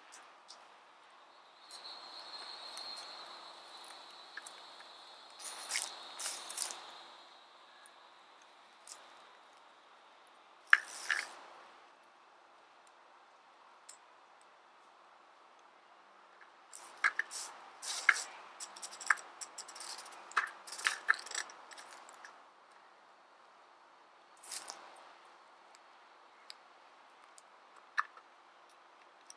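A trail camera's plastic case and nylon strap being handled as the camera is strapped to a tree trunk: scattered clicks and scrapes, the sharpest click about eleven seconds in, then a quick run of clicks a little later. A steady high buzz sounds for a few seconds near the start.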